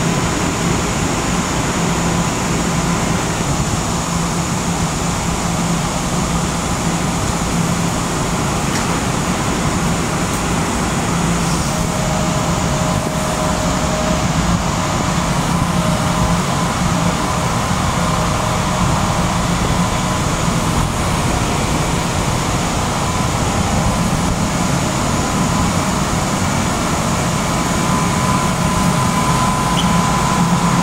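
Steady hum and rumble of an electric commuter train standing at an underground platform, its onboard equipment running, with faint steady tones through it.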